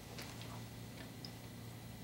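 Quiet room tone: a low steady hum with a few faint ticks.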